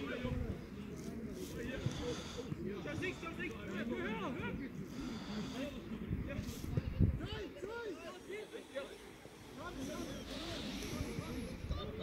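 Scattered shouts and chatter from players and spectators at a football match, with no clear words, over a low rumble.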